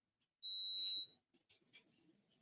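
An electronic beep: one steady high-pitched tone lasting nearly a second, followed by a few faint clicks and rustling.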